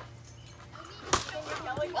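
A plastic wiffle ball bat hitting a wiffle ball: one sharp, hollow crack about a second in.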